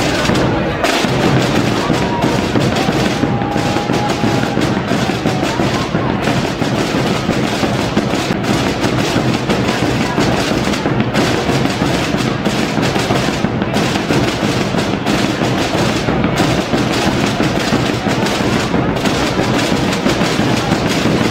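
A drum corps of Aragonese tambores (rope-tensioned snare-type drums) and bombos (large bass drums) playing together in a loud, continuous, rapid rolling rhythm.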